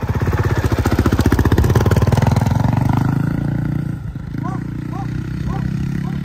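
Honda CRF450R dirt bike's single-cylinder four-stroke engine running hard with fast firing pulses for the first three seconds as the bike pulls away, then dropping back about four seconds in and running steadier and quieter as it moves off.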